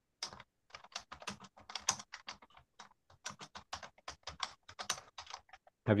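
Computer keyboard typing: a run of quick, irregular keystrokes that stops near the end.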